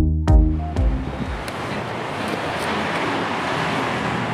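An electronic music beat ends about a second in, followed by a steady rushing noise like wind.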